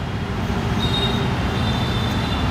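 Steady low background rumble with no speech.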